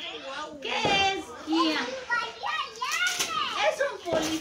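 Children talking and calling out in high voices, with an adult voice among them.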